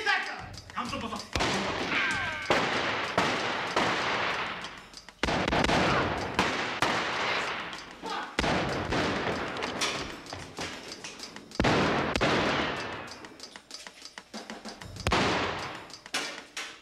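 Gunfire in a film action scene: many shots in quick succession, coming in several volleys with short lulls between them.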